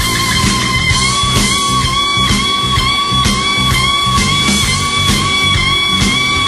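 Live electric blues band playing an instrumental passage. An electric guitar holds a high note that bends down and back about once a second, over drums.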